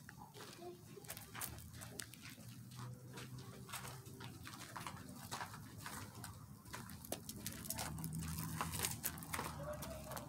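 Footsteps crunching and scuffing on a dirt floor littered with wood debris, as irregular clicks and crunches, over a faint low hum.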